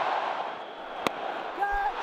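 A large stadium crowd's noise dies away, then a single sharp crack of a cricket bat striking the ball comes about a second in: a mis-hit skied into the air.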